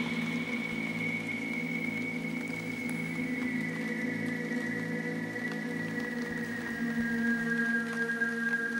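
Beatless intro of an electronic music track: held synthesizer drones with a high tone that slowly glides downward and splits into several tones.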